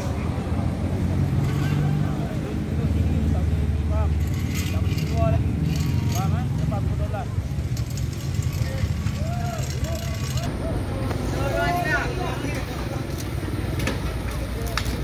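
Low, steady rumble of passing car traffic, with people talking over it. About ten seconds in the sound changes abruptly: the rumble drops and the voices become clearer.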